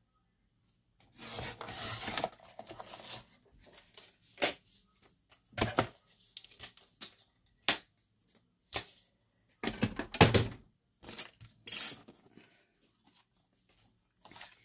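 A paper trimmer cutting cardstock for a shim, a rough scraping stretch of about two seconds. It is followed by scattered clicks and knocks as acrylic cutting plates and card are handled, the heaviest thumps coming about ten seconds in.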